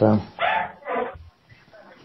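Two short animal calls, about half a second apart, each lasting a fraction of a second, right after a spoken "uh".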